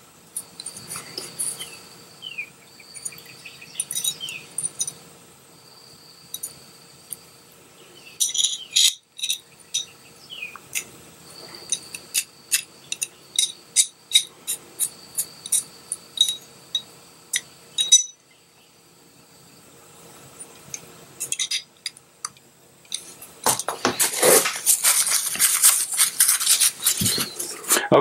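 Small metallic clicks and clinks of a hex nut driver and the nut against a steel pistol slide as a front sight is screwed on and tightened. Near the end comes a longer, denser rubbing and rustling noise from the parts being handled.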